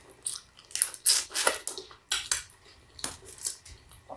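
Cooked lobster tail shell being handled and picked apart by hand, giving a series of short, irregular crackles and clicks.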